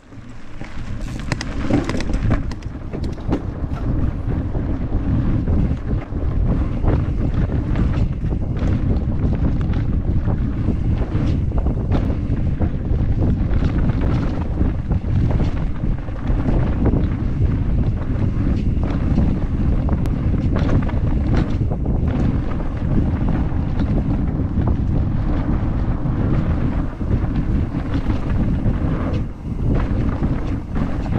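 Wind buffeting a GoPro Max action camera's microphone as a mountain bike rides fast down a dirt trail: a loud, steady low rumble with many small clicks and knocks from the bike rattling over the ground. It fades up from silence in the first second or two.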